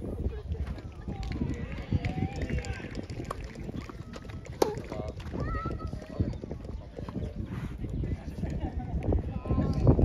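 Outdoor court ambience: wind rumbling on the microphone and faint distant voices, with a single sharp crack of a racket striking a tennis ball about halfway through.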